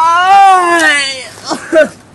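A boy's loud, long wailing cry that rises and then falls in pitch, followed by two short cries near the end.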